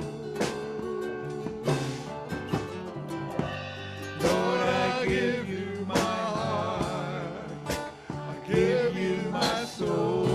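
Live worship band playing: strummed acoustic guitars under a steady beat, with singing voices coming in about four seconds in.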